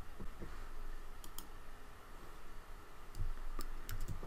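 Computer mouse clicking: two pairs of short clicks, one about a second in and one near the end, over faint low room hum.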